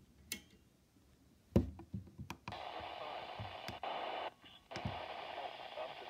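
A Midland WR120 weather radio: a few sharp clicks from its buttons, then about two and a half seconds in, a steady hiss of static from its speaker on the 162.500 MHz NOAA channel. The static cuts out briefly near the middle.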